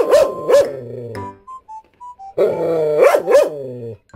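Jindo dog barking at another dog: two sharp barks at the start, then a longer run of loud barks about halfway through. Background music plays in the gaps.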